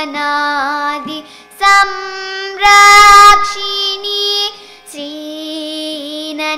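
A young girl singing a Carnatic classical song, holding long notes with ornamented pitch bends. The loudest passage is a high note held for under a second, about halfway through.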